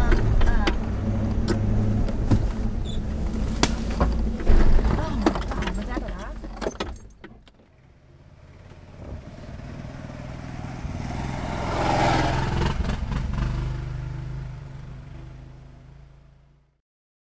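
Land Rover Discovery II's V8 running at a slow crawl, heard from inside the cab, with frequent knocks and rattles from the body and suspension over the rough trail. About halfway the sound drops away, then swells up again and fades out near the end.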